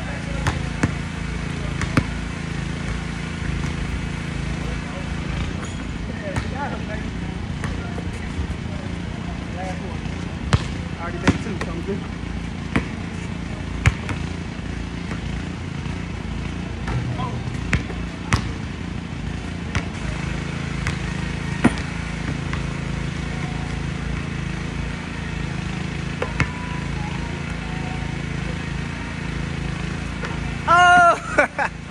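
A basketball bouncing on an outdoor hard court: sharp single thumps every few seconds, the clearest of them in the middle of the stretch, over a steady low background hum.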